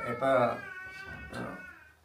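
A man talking in Assamese in a small room, his voice drawn out and bending in pitch midway, then pausing briefly near the end.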